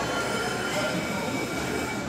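Busy restaurant din: many voices chattering indistinctly, with a faint steady high-pitched whine running through it.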